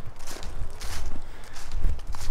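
Footsteps walking over fallen leaves, heard as a few soft steps over a steady low rumble on the microphone.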